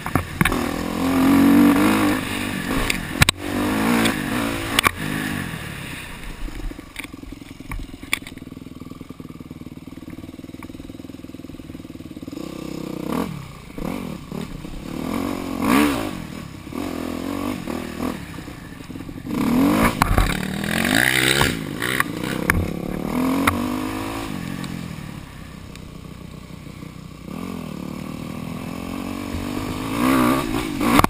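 Dirt bike engine under riding load, revving up and falling back in repeated throttle bursts with quieter stretches at lower revs, along with clatter and knocks from the bike over rough ground.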